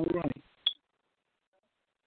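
A brief snatch of a voice, then a single sharp click with a short high ping, followed by dead air.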